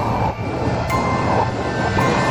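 Horror-trailer sound design: a loud, steady rumbling drone laced with thin high tones, with a sharp click about a second in.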